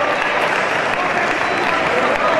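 Spectators applauding a scored touch in a fencing bout, with voices mixed in.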